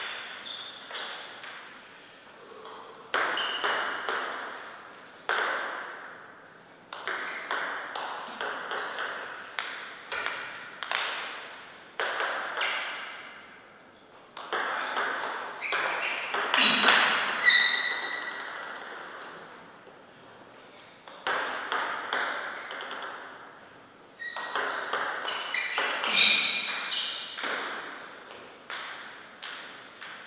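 Table tennis rallies: the celluloid-type plastic ball clicking quickly back and forth off the rubber paddles and the table, each click ringing briefly in a reverberant hall. The clicks come in several runs of a few seconds each, one per point, with short pauses between them.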